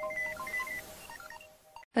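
News-programme intro jingle: electronic music of short, bright beeping notes over a held tone, fading out about a second and a half in.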